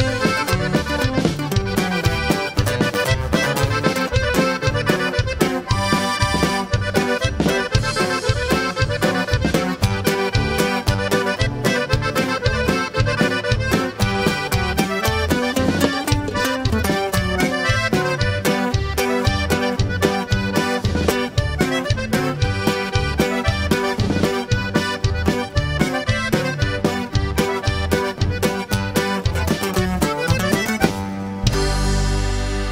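Norteño group playing an instrumental polka: button accordion carrying the melody over guitar, electric bass and drums in a fast, even two-beat rhythm.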